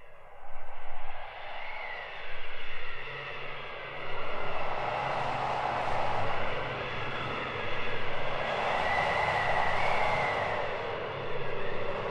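Howling wind sound effect on a metal album intro, swelling and easing in gusts every second or two, with a thin wavering whistle above it.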